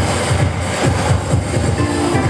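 Funk instrumental played live on an electronic keyboard through a small amplifier, with a busy bass line of quick low notes under sustained chords.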